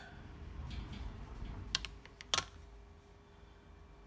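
Handling noise and a few sharp clicks as a silver cigarette case is set down on a small digital pocket scale, the loudest click coming a little past halfway.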